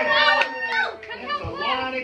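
A small group of people, children among them, talking and calling out over one another.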